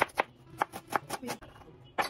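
Kitchen knife slicing a small red onion against a plastic cutting board: a few sharp, uneven cuts in the first second, then a lull, then one more crisp knock of the blade at the end.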